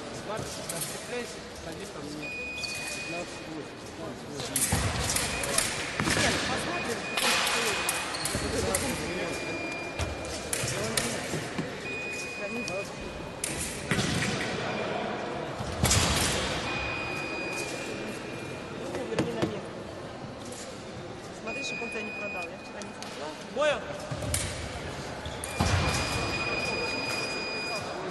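Fencers' footwork on a piste in a large, echoing sports hall: repeated stamps and thuds from advances and lunges. Short, steady high-pitched tones sound every few seconds.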